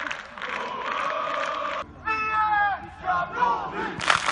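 Crowd of football supporters chanting together. It breaks off suddenly about two seconds in, and a single man's long shout follows, falling in pitch, then a shorter shouted call.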